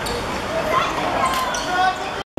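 Players shouting and calling to each other during a football match, with sharp thuds of the ball being kicked and bouncing on the hard court.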